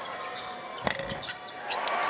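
A basketball bouncing on a hardwood court, with one loud sharp bounce about a second in and a few lighter clicks, over the murmur of an arena crowd.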